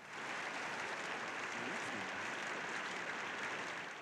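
Audience applauding: clapping starts suddenly and holds steady, easing slightly near the end.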